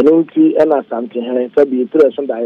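Speech only: a man talking over a telephone line, his voice cut off above the middle of the range as on a phone call.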